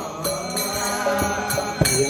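Devotional mantra chanting set to music, a sung melody over a steady drone, with sharp percussion strikes about every half-second.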